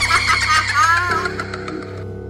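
A man's high-pitched evil cackle over a steady horror-music drone. The laugh breaks off about a second in, leaving the drone.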